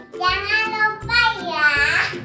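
A young girl singing over background music.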